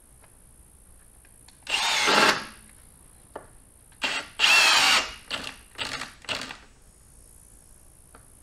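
Cordless drill driving a screw into a rough-sawn timber frame rail: two longer runs of the motor, then several short trigger bursts as the screw is seated.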